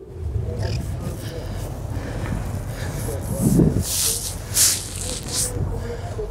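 Two-stroke snocross race sled idling with a low steady rumble. From about three seconds in come several short bursts of hiss.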